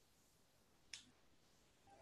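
Near silence, broken by one short, sharp click about a second in.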